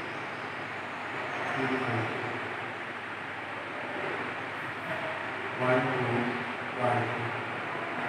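Steady rushing background noise throughout, with a man's low murmured voice coming in briefly about two seconds in and again around six to seven seconds.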